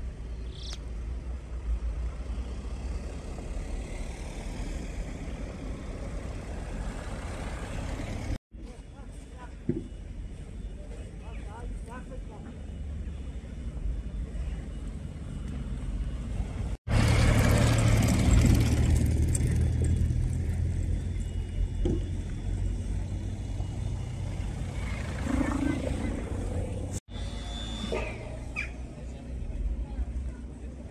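Street sound in deep snow: a steady low rumble of traffic, louder for a few seconds past the middle as a car drives through the snow. The sound drops out abruptly three times, briefly.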